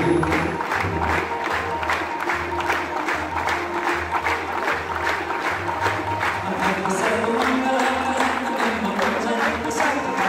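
Hindu aarti devotional music: group singing over sustained low tones, with a steady beat of claps at about three a second.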